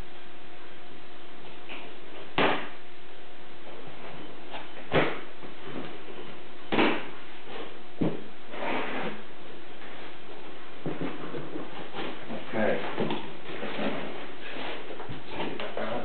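A cardboard guitar shipping box being handled and opened: four sharp knocks against the cardboard in the first half, then scraping and rustling of the box flaps and packing tape.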